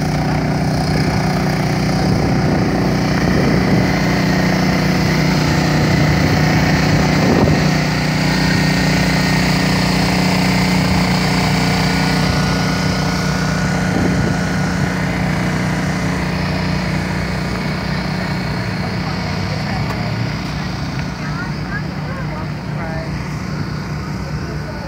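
A steady engine drone at a constant pitch, easing somewhat in the second half, with people talking in the background.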